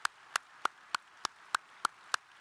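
Audience applauding, with one person's hand claps close to the microphone standing out at a steady pace of about three a second over fainter clapping from the hall.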